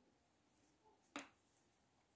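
Near silence, with one brief, faint click about halfway through.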